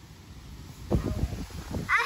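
A few low thuds and rustles from about a second in, then near the end a toddler's high-pitched squeal with falling pitch.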